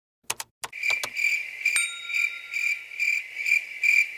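Cricket chirping sound effect: a high chirp pulsing about twice a second, starting about a second in. It is the comic 'crickets' used to mark an awkward silence. A few sharp clicks come just before it.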